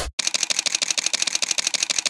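Camera shutter firing: one separate click, then a rapid continuous burst of shutter clicks, more than ten a second.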